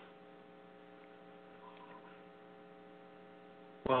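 Faint, steady electrical hum made of several held tones on the recording line. A man's voice starts right at the end.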